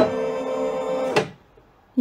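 Brother Innov-is F480 embroidery machine giving one steady, buzzy tone for just over a second as a touchscreen key is pressed; it starts and stops abruptly.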